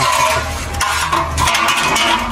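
Sheet-metal body pieces scraping and clattering as they are handled, in two stretches split by a brief pause a little under a second in.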